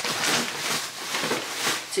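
Hot oil sizzling and crackling steadily as food deep-fries.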